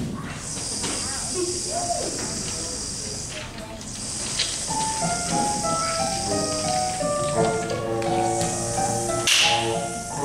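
A school band's storm effect: a rain stick hissing in long waves, joined about halfway through by brass and saxophone playing slow held notes, with a sharp crash near the end.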